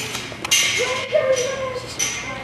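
A person's voice, one drawn-out vocal sound, over a rush of hissing noise that starts about half a second in.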